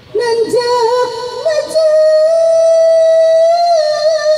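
A woman singing Sundanese tembang Cianjuran in laras mandalungan: she comes in with a quickly ornamented phrase, then holds a long steady high note through the second half and bends it down near the end.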